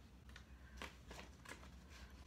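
Faint rustles and soft clicks of paper card being handled and folded, a handful of short separate crinkles over low room tone.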